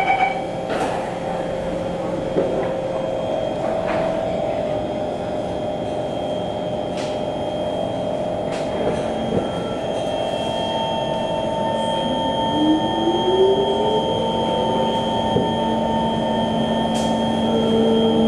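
Inside a Kawasaki C151 metro car, the doors shut with a sharp knock about a second in. The train's Mitsubishi Electric GTO chopper traction equipment then whines in steady tones as the train pulls out of the station. From about two-thirds of the way through, one tone climbs in pitch as the train picks up speed.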